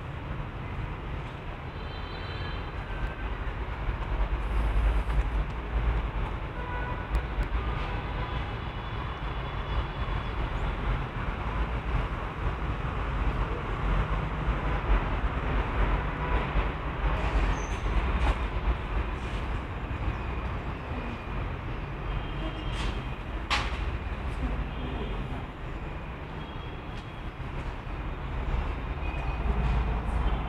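Steady background rumble of distant city traffic with a light hiss, a few short high chirps, and one sharp click about two-thirds of the way through.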